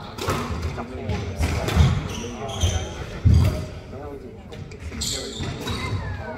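A squash rally: the ball thudding off the court walls, with a couple of heavy thumps about two and three seconds in, and players' shoes squeaking on the wooden floor.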